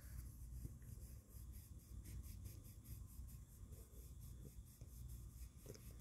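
Faint, quick back-and-forth rubbing of a nail buffer block on a fingernail, in even strokes: the final polishing step that brings the nail to a shine.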